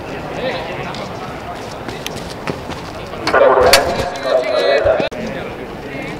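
People's voices talking in the background, with one nearby voice louder from about three seconds in until the sound cuts off abruptly about five seconds in.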